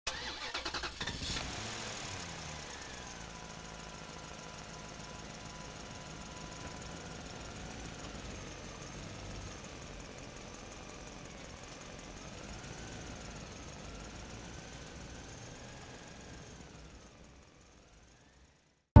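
A car engine starting, then running steadily with its pitch wavering slowly up and down, fading away near the end.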